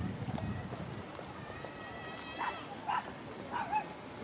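A small dog barking three short times, about half a second apart, over the background of people talking in a crowd.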